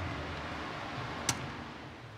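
A single sharp metallic click about a second in, a steel punch set against the differential carrier's tapered roller bearing to drive it off, over a faint steady hiss.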